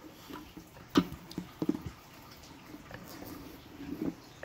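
Small plastic toys being handled: a sharp click about a second in, then a few lighter ticks and knocks.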